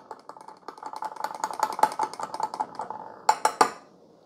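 A metal spoon stirring a latte in a glass mug: rapid light clicks of the spoon against the glass with a faint ringing from the mug, then a quick run of about four sharper clinks a little past three seconds in.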